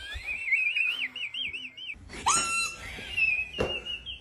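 A high whistled tone that wavers quickly up and down, breaking off about halfway through with a sharp thump. A second high whistled tone follows, creeping slowly upward toward the end.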